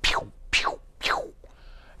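A man's voice imitating synthesizer sounds with his mouth: three quick falling "peeow" sweeps, about half a second apart.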